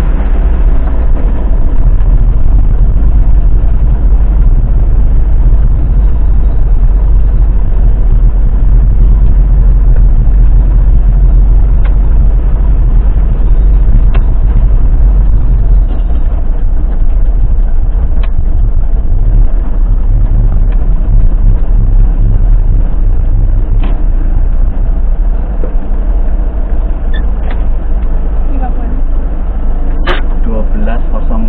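Loud, steady low rumble of an ambulance driving slowly over brick paving, heard inside the cab through a dash camera, with a few faint clicks.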